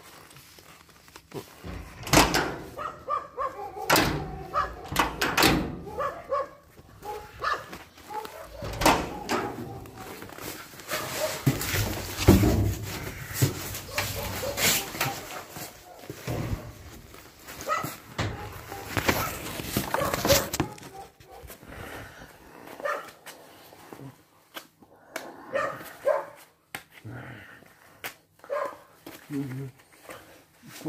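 A dog barking on and off, mixed with a man's voice, with irregular sharp sounds throughout.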